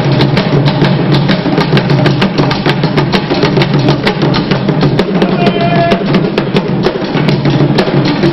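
Drum music: many drums beaten in a fast, dense, steady rhythm, accompanying a dance. A brief high pitched note sounds over it about halfway through.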